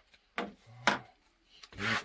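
Two sharp light taps about half a second apart: a glue brush and tools being set down on a plastic cutting mat while glued fabric is handled.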